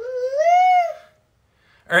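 A young girl's voice making one drawn-out, high-pitched vocal sound that rises and then falls in pitch, ending about a second in.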